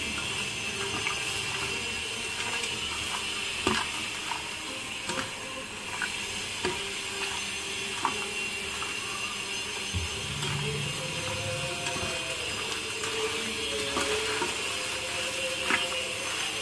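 A hand mixing marinated raw mutton in a stainless steel bowl: soft wet squishing with a few sharp knocks and clicks against the bowl, over a steady background hiss.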